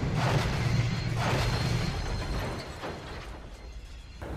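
Train-crash sound effects: a low steady rumble with two swells of crashing noise in the first half, fading away over the last second.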